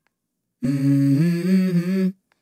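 Soundtrack music: a voice humming a short melodic phrase, coming in about half a second in after a gap of silence and moving in small steps of pitch.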